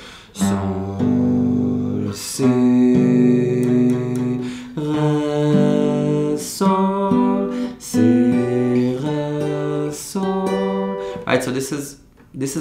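Acoustic guitar playing three-note G major triads slowly through their inversions. About ten chords are struck one at a time, each left to ring for roughly a second before the next shape.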